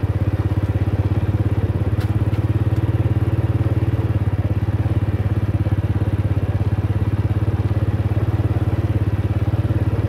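Motorcycle engine running at a steady speed, with a rapid, even beat, while riding.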